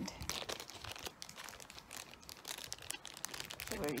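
Small clear plastic bag crinkling and crackling irregularly as it is handled, with the jewellery inside.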